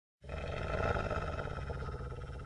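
Intro sound effect: a rough, steady roaring noise heavy in low rumble, starting abruptly just after the beginning.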